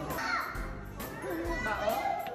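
Children's voices: talking and calling out among visitors, with no clear words.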